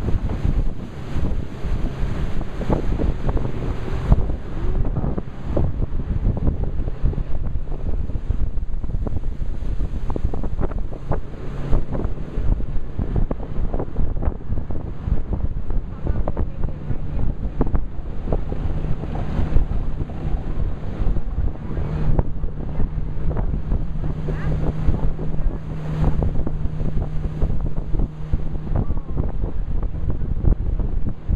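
Wind buffeting the microphone over the steady low drone of a small boat's outboard motor under way, with water noise along the hull.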